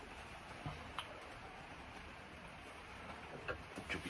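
Faint handling sounds as a tobacco pipe is picked up from a wooden workbench: a few light clicks and taps, about a second in and again near the end, over a steady low hiss.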